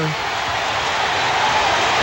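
Stadium crowd cheering for a touchdown: a steady wash of crowd noise carried on the radio broadcast. The announcer's long falling shout dies away right at the start.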